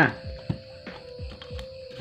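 A small screwdriver prying the plastic diffuser dome off an LED bulb, giving a few faint clicks as the dome works loose, the clearest about half a second in. A steady faint tone runs underneath.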